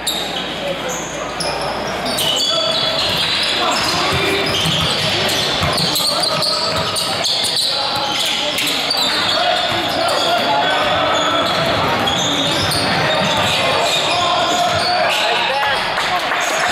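Basketball game sound in a gym: a basketball bouncing on the hardwood court amid players' and spectators' voices, echoing in the large hall.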